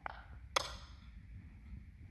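Two brief sharp clicks about half a second apart, over faint low background noise.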